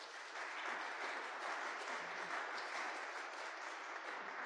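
Congregation applauding, a steady even clapping at moderate level.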